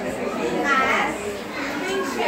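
Indistinct chatter of several women's voices overlapping, with no single clear speaker.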